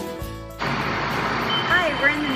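Background music ends about half a second in and is cut off suddenly by busy-street traffic noise. A steady high electronic tone starts partway through and holds, and a woman's voice begins near the end.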